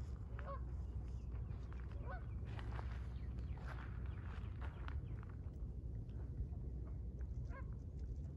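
A few short, spaced-out bird calls, goose-like in kind, over a steady low rumble.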